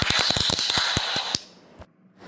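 A small group clapping hands in applause. It stops abruptly about a second and a half in.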